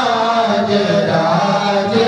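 Hindu priests chanting Sanskrit mantras through microphones, joined by other voices, in one continuous, steady chant.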